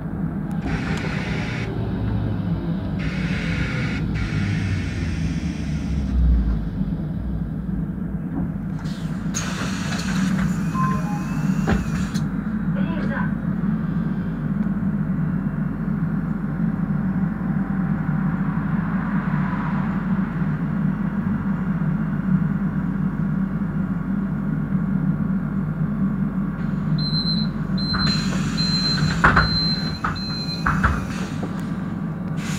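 Interior of a 2006 Solaris Trollino III 12 AC trolleybus: a steady hum and an electric traction-motor whine that sweeps in pitch as it slows to a stop, hisses of air as the doors open, then a run of evenly spaced high beeps, the door-closing warning, near the end.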